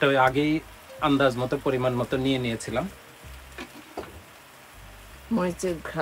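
Mutton frying in ghee in a large aluminium pot, sizzling steadily as green chili and ginger paste goes in. A man's voice comes and goes over it in three stretches and is louder than the sizzle.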